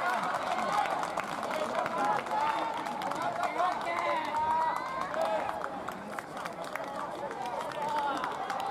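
Many young ballplayers' voices calling and shouting across a baseball field, overlapping continuously so that no words stand out.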